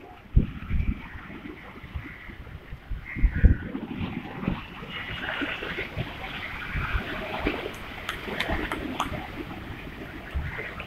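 Rough sea water splashing and churning against a stone sea wall, a continuous irregular wash, with several low thumps, the loudest about half a second and three and a half seconds in.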